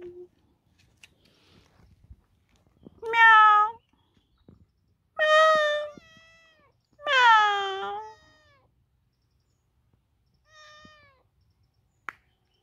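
A stray kitten meowing: three loud, drawn-out meows a couple of seconds apart, each falling in pitch at the end, then a fainter meow near the end.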